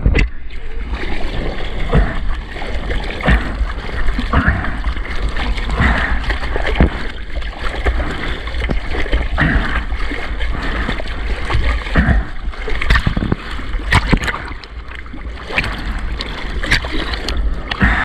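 Seawater splashing and rushing along a surfboard's rail close to a board-mounted action camera as the board paddles into and runs with a wave, with many short splashes over a steady low rumble.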